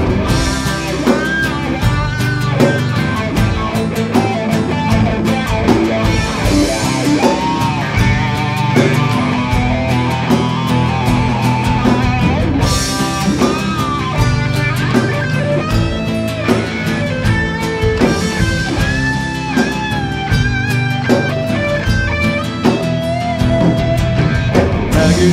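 A metal band playing live without vocals: an electric guitar line with pitch bends over a drum kit.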